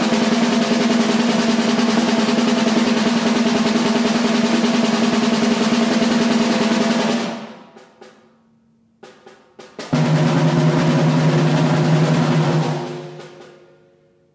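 A loud drum roll held with a steady ringing pitch, fading out about seven seconds in. A few light strokes follow, then a second, lower-pitched roll that swells and dies away near the end.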